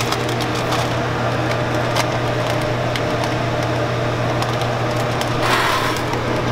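Chocolate enrobing machine running: a steady hum with light rattling ticks from the wire conveyor, and a short hiss near the end.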